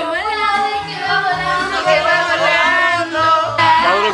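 Latin music with a singing voice holding long, sliding notes over a steady bass line.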